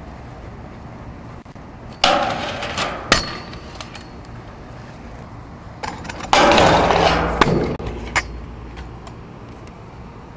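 Stunt scooter deck scraping across rough rock twice. Each scrape lasts a second or two and ends in sharp clacks as the scooter comes off and lands.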